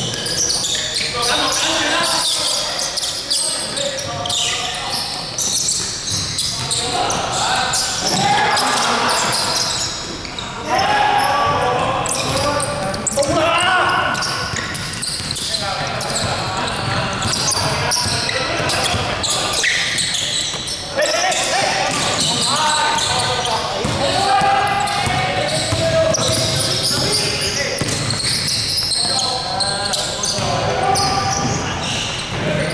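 Basketball game in a large gym: the ball bouncing on a wooden court, with indistinct voices of players calling out, all echoing in the hall.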